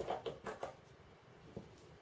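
A few faint clicks and taps from a small bottle of Mr. Cement S plastic glue being handled and its brush cap unscrewed, mostly in the first half second or so, with one more click later.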